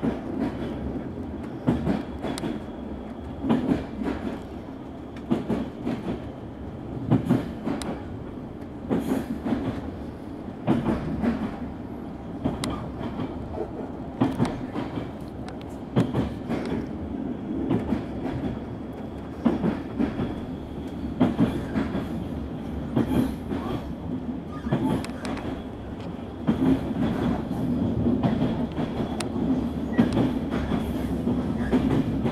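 Train running, heard from on board: a steady low rumble broken by irregular clacks of the wheels over rail joints.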